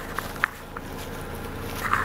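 Footsteps on dry leaf litter: a few short, spaced crunches, then a louder scuff near the end.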